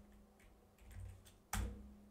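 Computer keyboard keystrokes as a filename is typed, faint and sparse, then one sharper, louder key press or click about one and a half seconds in as the save is confirmed.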